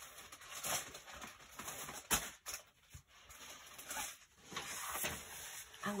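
Plastic packaging rustling and objects being handled on a tabletop, with a couple of short soft knocks about two seconds in.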